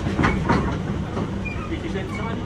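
British Rail Class 317 electric multiple unit heard from inside its passenger saloon while running: a steady low rumble of wheels on rail, with a short clatter about half a second in.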